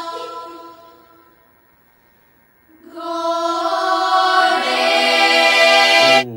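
Bulgarian women's folk choir singing in sustained close harmony. A held chord dies away almost to silence over the first two seconds; a new chord enters just before three seconds in and swells as lower voices join.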